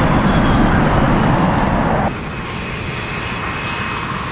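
Jet engines of a four-engine Ilyushin Il-76 transport rolling on a snow runway: a loud, steady rush that drops suddenly to a quieter hum with faint steady whines about halfway through.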